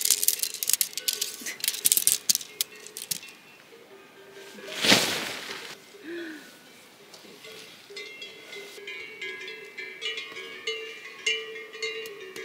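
Tent poles clicking and clinking as they are assembled and fed into a dome tent, with a brief rush of noise about five seconds in, over soft background music.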